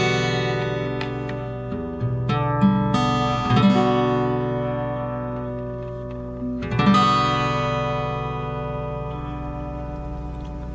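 Acoustic guitar in standard tuning playing an E minor 9 chord: E minor with the ring finger moved to the high E string at the second fret. It is struck near the start, several times about two to four seconds in, and again about seven seconds in, each time left to ring out.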